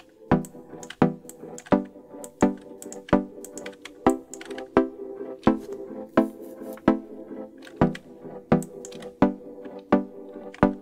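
A synth melody of short plucked notes looping at an even pace, about one note every 0.7 seconds, played through FL Studio's Fruity Convolver reverb. The convolver uses a short upward sweep sample as its impulse response, so each note carries a wet, swept reverb tail while its settings are being changed.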